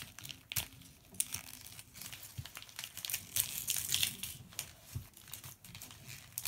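Shiny wrapping paper being crinkled and torn off a metal tin by hand: an irregular run of crackles and rustles.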